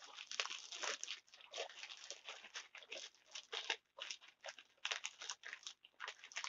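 Clear plastic bags of yarn crinkling as they are handled, in irregular rustles with short gaps.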